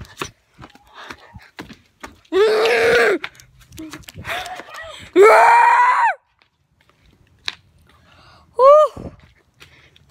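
Children screaming and yelling in play: a loud shout about two seconds in, a longer scream rising in pitch about five seconds in, and a short yelp near the end. Small scuffs and knocks come between the cries.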